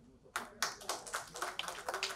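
Scattered hand claps from an audience, an irregular patter of separate claps starting about a third of a second in.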